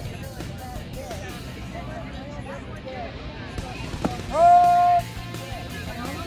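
Background music and voices, broken about four seconds in by a single sharp smack, followed at once by a loud, drawn-out shout that rises in pitch and holds for under a second.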